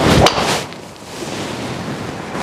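A Callaway Paradym Ai Smoke Triple Diamond driver swung into a golf ball, with one sharp strike about a quarter second in that then fades, over a steady rushing noise. The ball is caught a touch low on the clubface.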